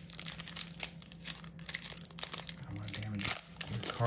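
Foil booster-pack wrapper crinkling as it is torn open by hand, a quick, irregular run of sharp rustles.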